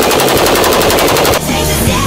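A burst of fully automatic fire from an AK-pattern rifle in an indoor range: about ten shots a second for roughly a second and a half, then cut off abruptly as rock music comes back in.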